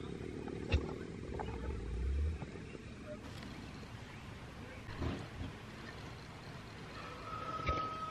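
Blue slate tom turkey in full strut, giving its spit-and-drum display: a short sharp spit about a second in, then a low drumming hum, with another spit later on.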